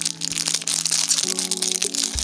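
Background music with long held low notes, over the crinkling of a thin clear plastic bag being handled and pulled open around a small squishy toy.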